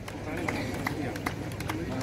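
Low murmur of voices with a steady run of light hand claps, about two and a half a second.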